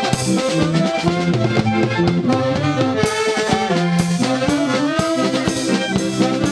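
Live folk band playing an old-time foxtrot: saxophones and accordions carry the melody over a drum kit keeping a steady beat.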